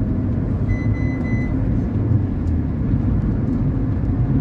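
Steady low rumble of road and engine noise inside a moving car's cabin. A brief high-pitched tone sounds about a second in.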